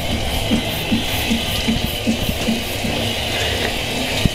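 Shower water spraying steadily, with music playing over it.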